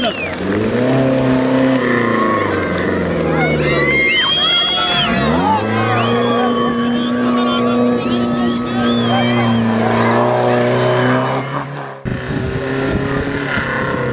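Off-road 4x4 engine being revved hard, its pitch rising and falling, dropping about five seconds in, then held high and steady for several seconds, with crowd voices over it.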